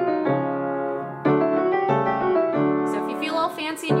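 Upright piano played with both hands: a five-note scale in the right hand stepping over sustained left-hand chords, a new note struck about every half second.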